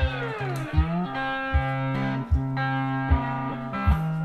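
Cigar box guitar playing slow blues, with sustained notes over a steady low drone, and a phrase that slides down in pitch and back up in the first second. A low thump sounds on each beat, about one every 0.8 seconds.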